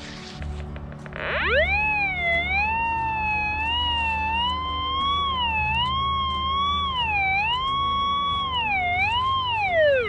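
Golden Mask Deep Hunter Mobile pulse-induction metal detector sounding its target tone over a silver talar replica buried 55–60 cm deep, showing it detects the coin at that depth. The whistle rises in pitch about a second in, wavers up and down with each sweep of the coil, and falls away near the end.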